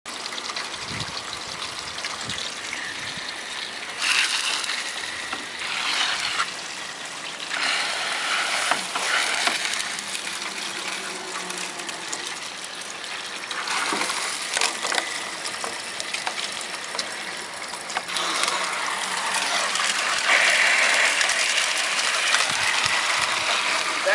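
Water from a garden hose spray wand jetting and splashing into a gutter as it is rinsed out. The spray comes in surges that swell and ease, with a few sharp clicks, and grows louder from about three quarters of the way in.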